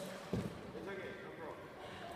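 A single dull thump, about a third of a second in, as a person drops from the basketball rim and lands on the indoor court floor, followed by voices talking.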